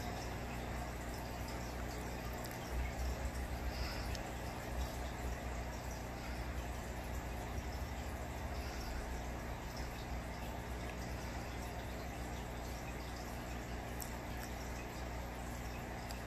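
Steady low hum with a faint hiss of moving water: a home aquarium's equipment running.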